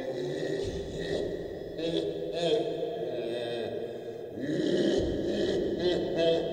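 A low, chant-like vocal with wavering, gliding pitch and no steady beat.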